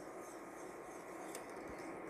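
A wire whisk stirring liquid lime curd in a stainless steel saucepan: faint, steady scraping and swishing against the pan, with one small click a little past halfway.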